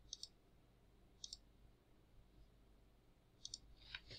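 Computer mouse button clicks: three short groups of two or three quick clicks, near the start, about a second in, and near the end, faint against near silence.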